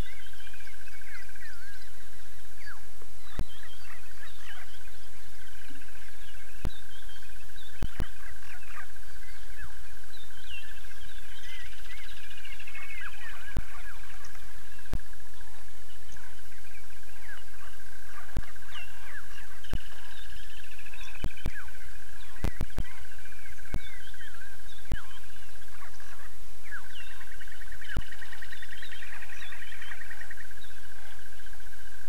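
Outdoor bush ambience at a waterhole: several birds chirping and calling over a steady high-pitched drone, with scattered sharp clicks and a constant low hum.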